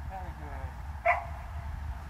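A Dutch shepherd gives a single short bark about a second in.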